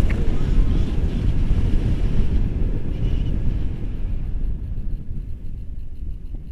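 Airflow buffeting the action camera's microphone in paraglider flight: a loud, low, unsteady rumble that eases a little near the end.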